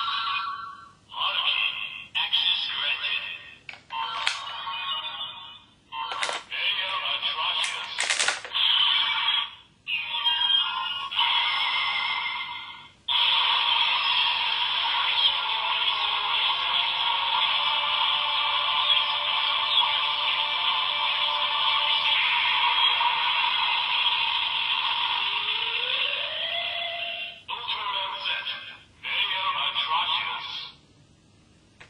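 DX Ultra Z Riser toy playing its electronic sounds through its small built-in speaker: short bursts of sound effects and voice calls with a couple of sharp clicks, then a long stretch of transformation music. It sounds thin, with little bass.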